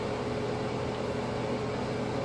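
Steady machine hum: a low drone with a faint constant whine above it.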